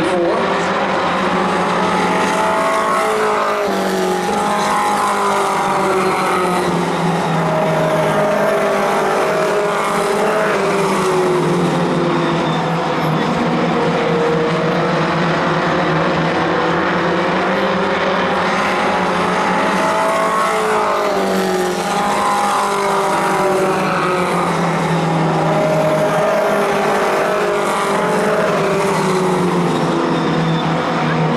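Four-cylinder Pro Stock race car engines running laps of the oval, several engine notes overlapping and slowly rising and falling in pitch as the cars accelerate and lift through the turns.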